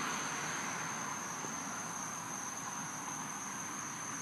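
Insects trilling steadily: one continuous high-pitched tone over a faint even hiss.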